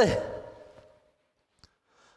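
A man's voice trails off at the end of a sentence into a breathy exhale, like a sigh, that fades within the first second. Then near silence, broken once by a faint click.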